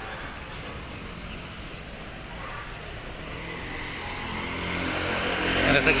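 A motor vehicle on a wet street over steady street noise, getting louder over the last two seconds as it draws near.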